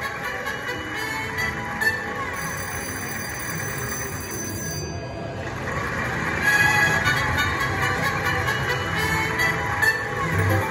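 Pop & Pay slot machine playing its win-celebration music with bell-like chimes for a Minor progressive award. It dips briefly about halfway, then comes back louder.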